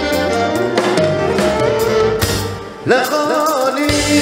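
Live Andalusian-style orchestra playing a Middle Eastern melody on violin, qanun, keyboards and drums, with a bass line underneath. After a brief dip in level about three quarters of the way in, a male solo singer comes in with an ornamented, wavering vocal line over lighter backing.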